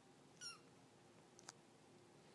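A kitten gives one short, high-pitched meow, followed about a second later by a faint click, against a quiet room.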